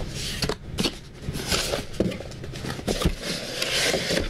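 A cardboard box being slid and lifted out of a larger cardboard box: several passes of cardboard scraping and rubbing against cardboard, with a few light knocks in between.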